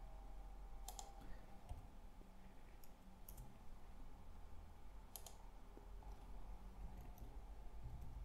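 A few faint, sharp clicks from a computer mouse and keyboard, spaced a second or two apart, over a low steady hum.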